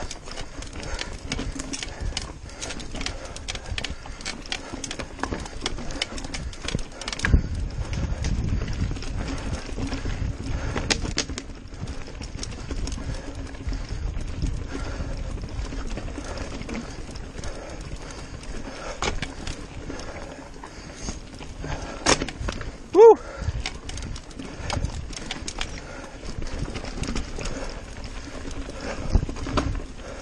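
Mountain bike clattering over a rocky trail: a steady run of knocks and rattles from the bike, with a deeper rumble about seven to twelve seconds in and one loud knock a little past the two-thirds mark.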